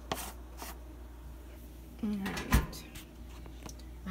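Clicks and rustles of laundry supplies being handled at a washing machine, then a single sharp thump about two and a half seconds in.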